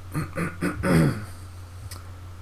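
A man's voice making a few short, broken vocal sounds in the first second or so, over a steady low hum; a single click near the end.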